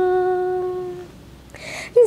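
A woman singing unaccompanied, holding one long steady note that fades out about a second in, then a quick breath in just before her next phrase begins.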